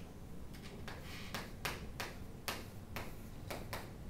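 Chalk tapping and scraping on a chalkboard while writing letters: an irregular run of about ten sharp taps, starting about a second in.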